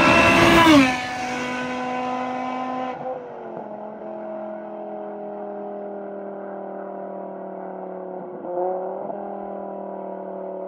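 Straight-piped BMW E60 M5's 5.0-litre V10 passing close at speed, its note dropping in pitch as it goes by just under a second in, then holding a steady, fainter note as it draws away. Near the end the note briefly dips and rises again.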